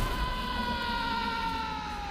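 A single sustained tone, sinking slowly and evenly in pitch for about two and a half seconds over a low rumble: a drawn-out sound-design note in a film trailer.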